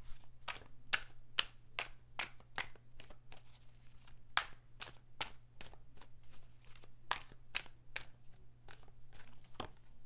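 A tarot deck being shuffled in the hands: a steady run of crisp card slaps, about two a second.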